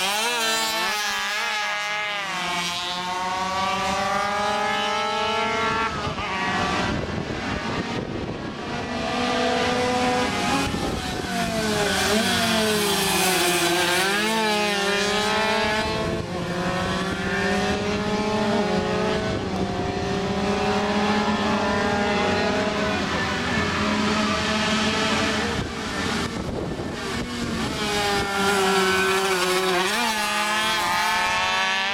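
Vintage racing motorcycles running hard around a short circuit, several at once. Their engine notes repeatedly rise through the gears and drop as they pass and slow for the bends.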